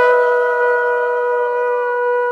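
Conch shells (shankha) blown in a long, steady, held note, with two pitches sounding together.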